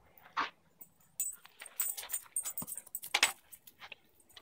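A dog playing fetch close by, with a short sharp sound about half a second in, then a quick run of high-pitched jangling and rattling bursts through the middle.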